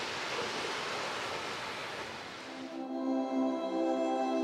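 Steady rushing noise of wind and moving water outside, then about three-quarters of the way in, soft background music with sustained tones begins.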